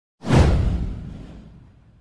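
A whoosh sound effect with a deep low rumble beneath it. It starts suddenly about a quarter second in, sweeps down in pitch, and fades away over about a second and a half.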